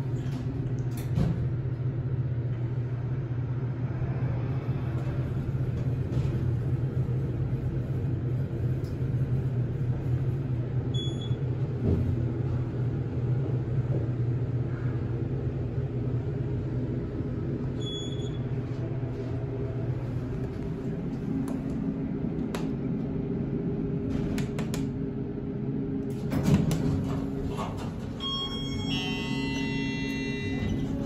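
Kone hydraulic elevator running, with the steady low hum of its pump motor carrying the car up. The hum gives way to a higher steady tone about twenty seconds in.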